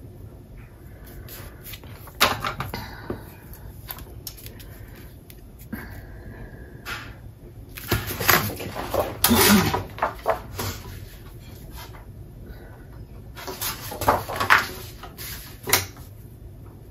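Paper and cardstock being handled on a cutting mat: sliding and rustling with light taps, in scattered bursts, the longest a little past the middle and near the end.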